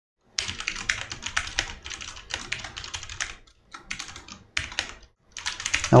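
Fast typing on a computer keyboard: a quick, dense run of key clicks with a few short pauses.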